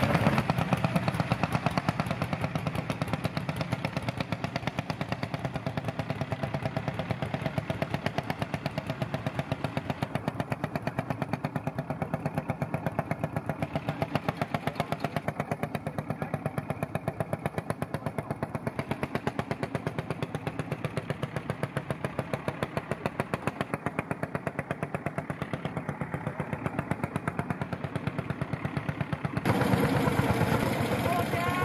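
A small engine running steadily with a rapid, even beat of firing pulses, neither revving up nor slowing down.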